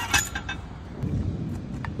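Old rusty steel sand bucket (a hand-built well bailer) being handled: a short metallic clink just after the start, light handling noise, and another faint click near the end.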